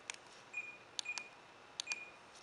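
Jensen VM9115 DVD receiver giving short, high electronic beeps as its controls are pressed, three times, with light clicks around them.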